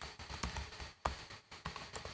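Keys of a small laptop keyboard being typed on to enter a Windows sign-in password: a few quiet, irregularly spaced key clicks.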